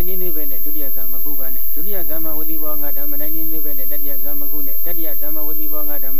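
A monk's voice reciting continuously in a drawn-out, sing-song intonation, syllables held for up to about a second.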